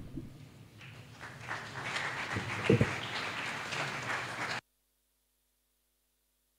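Audience clapping after a choir's song, building up about a second in and then stopping abruptly a little past four and a half seconds in, with a single low thump near the middle.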